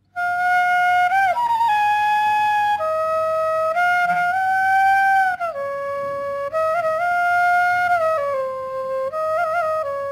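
Bamboo bansuri flute playing a slow melody of long held notes, decorated with quick ornamental turns (murki) between them. The playing is a little softer from about halfway.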